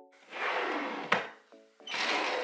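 A chest-of-drawers drawer sliding shut on its runners and closing with a sharp knock about a second in; near the end the next drawer starts sliding open.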